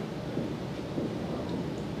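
Room tone in a pause between sentences: a steady, low background rumble and hiss with no distinct events.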